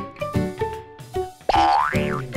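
Upbeat background music of short plucked notes, a little over two a second. About three quarters of the way through, a cartoon sliding-whistle sound effect rises steeply and then falls.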